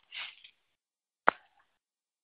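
A pause in a man's speech, nearly silent, broken by one short sharp click about a second and a quarter in; a faint breath sound near the start.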